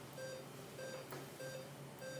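Patient monitor beeping regularly, a short tone about every two-thirds of a second, like a pulse-oximeter beat tone, over a low steady hum of operating-room equipment.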